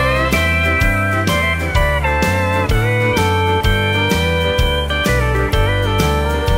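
Country band instrumental break: a steel guitar takes the lead with long, sliding notes over bass, drums and strummed guitar.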